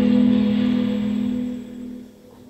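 Music ending on a held chord that fades out near the end.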